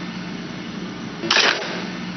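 A camera shutter click, once, about a second and a half in, over a steady hiss and a low hum.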